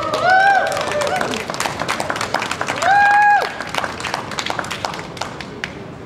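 Audience clapping and cheering, with two high, held whoops, one at the start and one about three seconds in. The clapping thins out toward the end.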